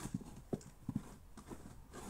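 Plastic DVD cases clacking against one another as they are handled in a box: a string of about half a dozen light, irregular knocks.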